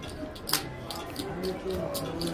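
Low background voices with one sharp click about half a second in, as the dealer picks up the played cards from the table felt.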